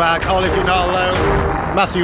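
A '90s house record playing from vinyl, with a steady bass line under a voice.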